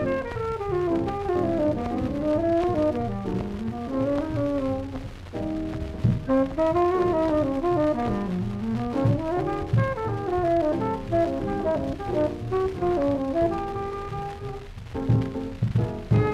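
Early-1950s small-group jazz played from a 78 rpm studio acetate disc: a horn plays a melodic line that climbs and falls in runs, over drums and a rhythm section.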